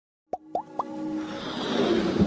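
Logo-intro sound effects: three quick rising bloops about a quarter second apart, then a swelling rush of noise with a held tone that builds toward the end.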